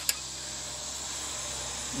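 Faint steady background hiss with a low hum underneath and a brief click just after the start; no engine is heard running.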